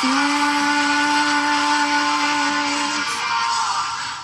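A woman's singing voice holding one long note, the word "last", for about three seconds before it stops, over a loud, dense, buzzing band accompaniment of a pop-punk song.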